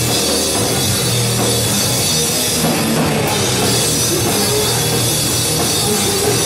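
A rock band playing loud and without a break, with drum kit and electric guitar, heard live in the room.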